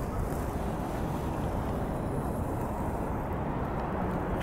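Steady low rumbling noise with no distinct events, wind on the microphone over distant city traffic.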